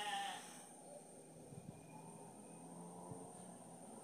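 Mostly quiet background with a few faint small ticks. A brief quavering voiced sound dies away in the first half second.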